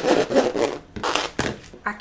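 A spatula scraping and pressing thick, sticky cooked dough against the inside of a pot, a few rubbing strokes in the first second, followed by a single knock.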